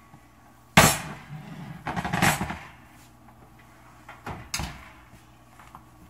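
Kitchen clatter as a lidded enamelled skillet is taken from the oven and set down on a glass cooktop: one sharp knock about a second in, a rougher scraping clunk a second later, then a couple of lighter clicks.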